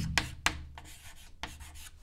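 Chalk writing on a chalkboard: scratchy strokes, with a few sharp taps as the chalk strikes the board in the first half-second or so.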